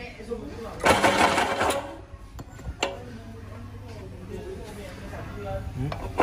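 Metal parts of an electric meat-grinder pellet extruder being handled as a die plate is fitted to the grinder head: a clattering rustle about a second in, then a few sharp clicks, over a steady low hum.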